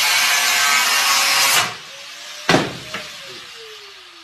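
Aerosol can of expanding foam spraying with a loud rasping hiss for about a second and a half. A sharp knock follows, then a whistle-like tone that slides down in pitch.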